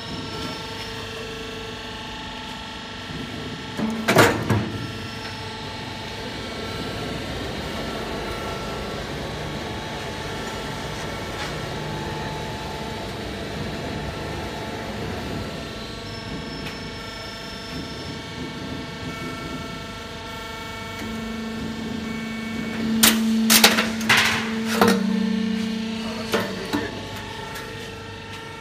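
Hat purlin roll forming machine running with a steady mechanical hum from its roller stands and drive. The hydraulic cut-off press strikes through the formed steel profile: one loud metal clank about four seconds in, and a cluster of sharp metal bangs near the end over a louder hydraulic hum.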